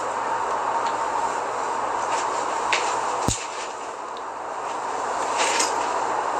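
Steady background hiss with a few light rustles of dress fabric as the dress is adjusted, and one sharp click about three seconds in.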